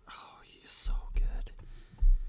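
A man whispering breathily close to the microphone, with no pitched voice. There are a few low thumps against the mic about a second in and again at the end.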